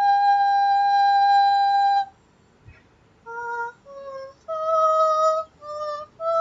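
A woman's voice toning wordlessly in a sound-healing session: one long, steady high note that stops about two seconds in, then after a short pause a run of shorter sung notes stepping up and down in pitch.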